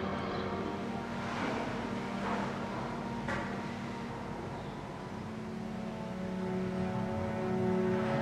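A low, steady ambient drone from the soundtrack that swells in the second half, with a couple of soft whooshes early on and one sharp click about three seconds in.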